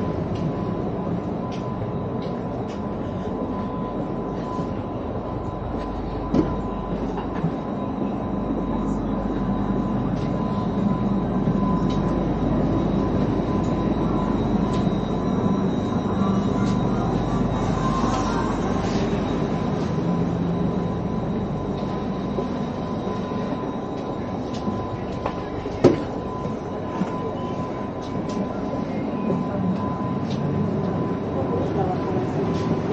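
Stationary CSR electric multiple-unit train of the Sarmiento line heard from inside the carriage: a steady hum of its running ventilation and onboard equipment with a thin, constant high whine. Two sharp knocks stand out, one about six seconds in and one near the end.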